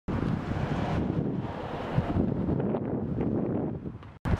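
Wind buffeting the microphone: a gusty low rumble with hiss above it, cutting off suddenly just before the end.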